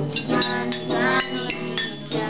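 Nylon-string classical guitar played together with a child's glockenspiel: several high, bell-like metal-bar notes struck and left ringing over the guitar's plucked notes.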